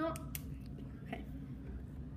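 A few faint, sharp clicks of a ballpoint pen touching down on paper over a wooden table as drawing begins: a quick cluster right at the start and one more a little over a second in, over a steady low room hum.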